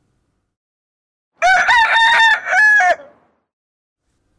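A rooster crowing once, a single cock-a-doodle-doo starting about a second and a half in and lasting about a second and a half. It serves as a daybreak cue, marking the move from night to morning.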